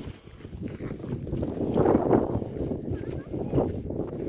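Wind buffeting a phone's microphone outdoors, a low, uneven rumble that swells in the middle.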